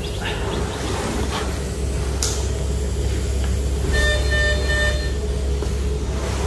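Steady low rumble and hum, with a short run of high electronic beeps about four seconds in from a bedside patient monitor.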